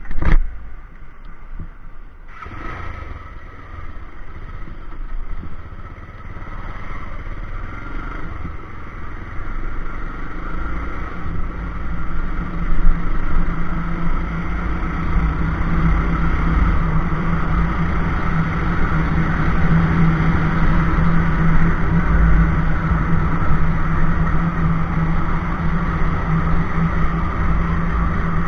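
Bajaj Pulsar 220F's single-cylinder engine as the motorcycle pulls away and gathers speed, the sound growing louder over the first ten seconds or so. It then runs steadily at cruising speed.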